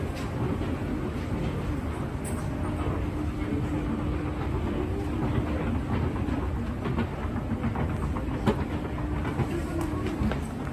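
Escalator running, a steady low rumble and hum, with scattered light clicks from the moving steps.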